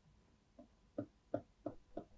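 Faint short taps of a pen stylus on a writing tablet as hatch lines are drawn, four strokes about three a second, starting about a second in.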